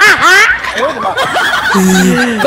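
A man and a woman laughing hard together, the woman's laugh high and loud.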